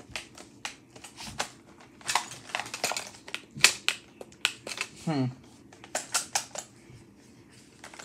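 Hands handling a plastic VTech Rhyme and Discover toy book and its packaging: irregular sharp clicks and crackles, with one loud click about three and a half seconds in. The toy itself gives no sound, probably because it has no batteries in it yet.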